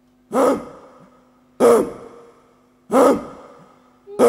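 Rhythmic vocal gasps into a microphone, three sharp sighing breaths about 1.3 seconds apart, each trailing off, over a faint steady low tone.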